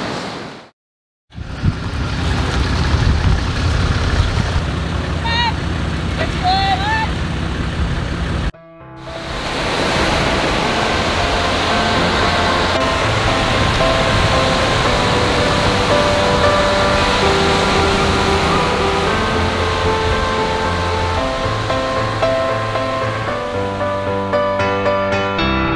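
Wind and surf noise on a beach, with a couple of short high calls in the middle of it. After a brief dropout, soft background piano music with held notes takes over for the rest.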